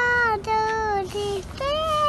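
A young girl singing long held notes without words: three notes stepping downward, then a higher note held from about one and a half seconds in.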